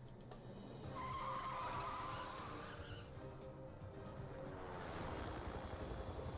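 Cartoon action soundtrack: a vehicle's engine and a wavering tyre squeal about a second in, under background music.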